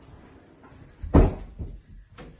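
A door thudding shut about a second in, followed by a smaller knock.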